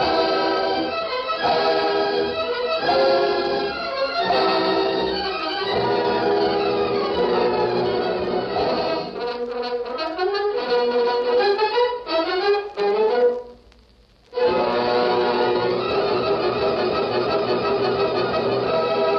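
Orchestral closing theme music with prominent brass, marking the end of the episode. Several rising runs lead into a break of about a second near the two-thirds point, and then the orchestra comes back in full.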